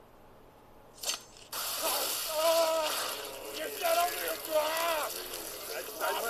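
Blood spurting from a cut artery: a sharp click, then a sudden, steady spraying gush of liquid starting about a second and a half in. A person cries out in drawn-out vowels over it.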